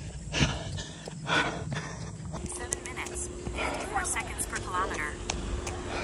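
A runner breathing hard and panting, with heavy breaths about once a second, at the end of an all-out sprint.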